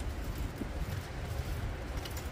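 Strong wind buffeting the microphone: an uneven low rumble.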